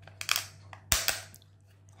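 Handling noise of a CD being worked onto a red 3D-printed plastic hub: a short rustle near the start, then one sharp plastic click about a second in.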